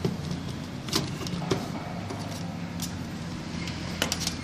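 Screwdriver working the metal terminal screws of a magnetic contactor, giving a few sharp metallic clicks about one, one and a half and three seconds in, over a steady low background hum.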